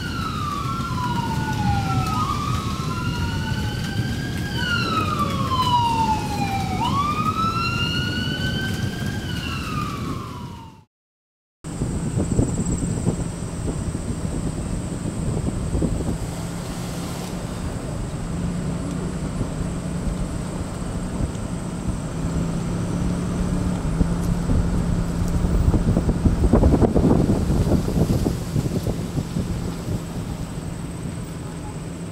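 Sirens wailing, several rising-and-falling sweeps overlapping one another over the steady hiss of rain. After a brief cut to silence about eleven seconds in, the steady hum and road noise of a moving vehicle, louder for a couple of seconds near the end.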